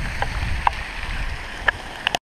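Steady rain and wind rumble on the microphone of a handheld camera, with a few sharp taps on the camera about a quarter second, two-thirds of a second and a second and a half in.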